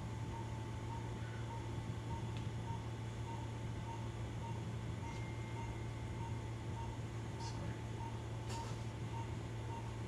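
Operating-room equipment: a short electronic monitor beep repeating evenly a little more than twice a second over a steady low hum, with a few faint clicks.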